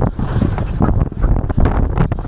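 Hoofbeats of a galloping horse, a quick run of strikes on turf and then dirt, with wind rumbling on the microphone.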